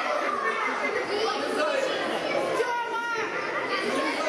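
Many overlapping voices chattering and calling out in a large hall, children's voices among them.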